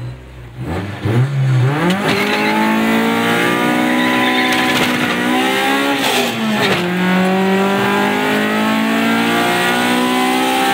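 Honda Civic's engine heard from inside the cabin at full throttle down a drag strip. It revs up hard at the launch about a second in and climbs steadily, drops briefly with an upshift about six and a half seconds in, then climbs again.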